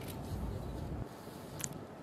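Open-air background noise with a low rumble and a single sharp click near the end.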